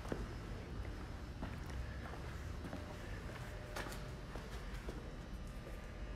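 Quiet room tone with a steady low hum, and a few faint, irregular footsteps or light knocks, the clearest about four seconds in.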